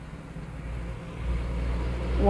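Low background rumble with a faint steady hum, growing louder about a second in.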